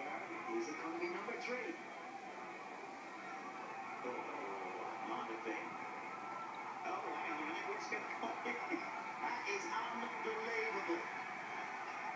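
Golf broadcast audio played through a television's speaker and recorded off the set, with a thin, band-limited sound. Voices sound over a steady, dense background of crowd noise from the gallery.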